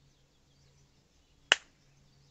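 A single sharp snap about one and a half seconds in, over a faint low hum.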